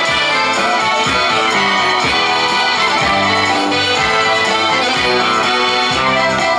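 Live folk music played on stage, an instrumental stretch with no singing: a dense, sustained melodic part over a low beat of about two strokes a second.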